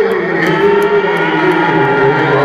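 Live rock band playing with electric guitars, heard loud and slightly distorted from within the crowd, with long held notes that slide slowly in pitch.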